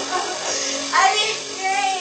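A high voice sings two short, wavering phrases, one about a second in and one near the end, over a faint steady held note.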